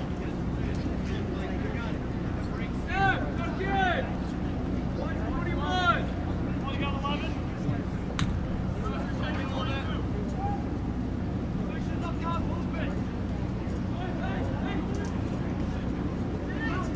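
Soccer players calling and shouting across the field, loudest in three short shouts in the first six seconds, over a steady low hum. A single sharp knock, typical of a ball being kicked, comes about eight seconds in.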